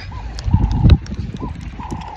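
A gust of wind buffeting the phone's microphone, a loud low rumble about half a second in that dies away before the one-second mark.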